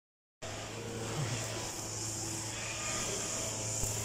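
Steady outdoor city background noise with a low, constant hum, typical of distant traffic heard from a rooftop; it begins about half a second in.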